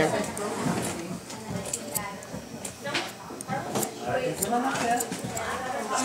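Hair-cutting scissors snipping through hair in a series of short, crisp clicks at irregular intervals, with faint speech in the background.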